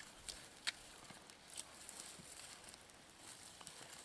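Faint, scattered snaps and crackles of dry twigs and kindling in small, freshly lit fires.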